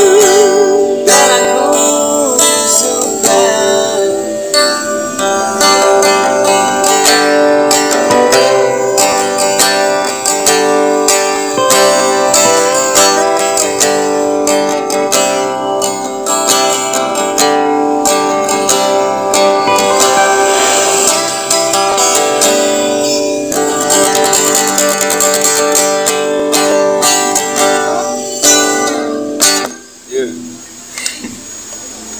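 Steel-string acoustic guitar strummed and picked through an instrumental passage of a song. A man's held sung note with vibrato trails off right at the start, and the guitar stops just before the end.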